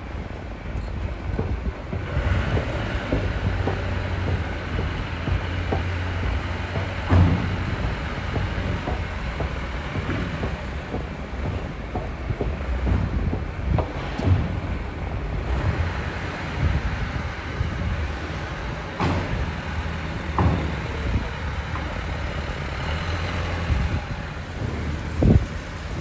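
Steady low rumble of outdoor city background noise, with a few short knocks along the way.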